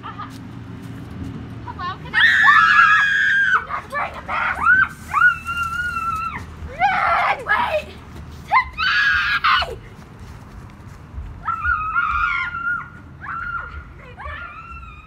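A child's high-pitched shrieks and squeals, about eight in a row, several held for a second or more, with a short pause a little past the middle.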